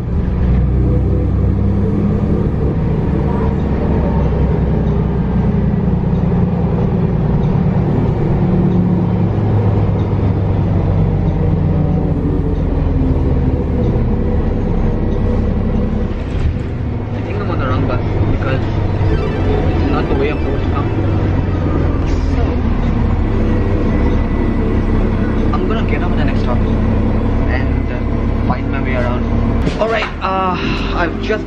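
City transit bus driving, heard from inside the passenger cabin: a steady low engine drone with road noise, with indistinct voices over it in the second half.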